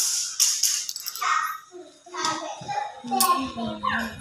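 Voices talking, including a young child's voice, with a brief hiss in the first second.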